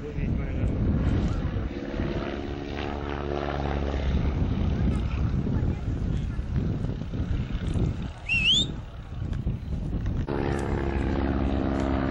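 Stearman biplane's radial engine and propeller droning in the air during an aerobatic routine, growing stronger near the end. A short rising whistle sounds about eight seconds in.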